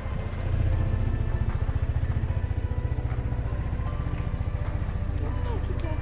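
Motor scooter engine running steadily with an even low pulse, heard from the rider's seat.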